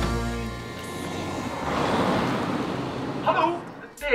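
The music's low bass stops about half a second in. A rushing noise then swells for about a second and a half and fades away. A short burst of voice comes near the end.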